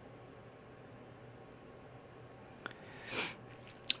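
Quiet room tone of a desk microphone: faint hiss with a low hum. Near the end, a short click, then a person drawing a quick breath in, and another click.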